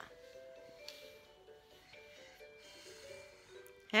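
Faint, simple electronic tune from a battery-powered baby toy, playing one plain note at a time.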